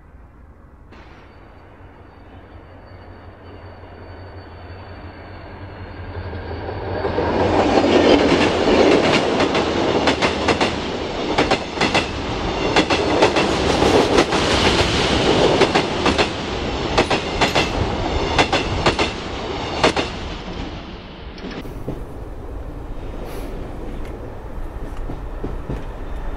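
Train running on rails, its wheels clicking rapidly over the rail joints. It builds up over the first several seconds, is loud through the middle, then drops back to a lower level a few seconds before the end.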